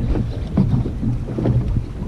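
Outboard motor running with a low, steady hum, mixed with wind buffeting the microphone.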